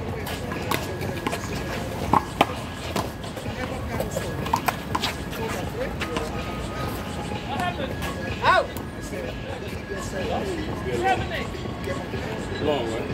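Sharp smacks of a small rubber ball being struck and rebounding off a concrete handball wall and the court during a rally: irregular hits, the loudest two close together about two seconds in.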